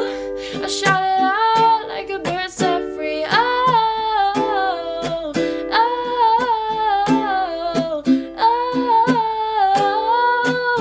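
A woman singing long, gliding notes to a strummed ukulele.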